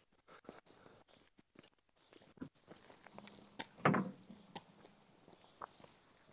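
Footsteps of several people walking on a rough paved path, a run of short scuffs and clicks, with one louder thump about four seconds in.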